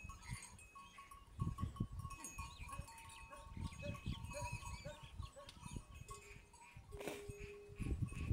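Farm animals calling around a herd of cattle, with one steady call held for about a second near the end. Irregular low rumbles run under it, typical of wind on the microphone.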